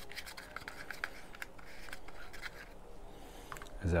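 Cardboard packaging scratching and rubbing under the fingers, with scattered small ticks, as a headset star nut is unscrewed by hand from the bolt holding it through the cardboard.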